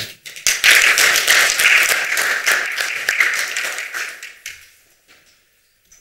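Audience applauding: a short round of clapping that fades away and stops about four and a half seconds in.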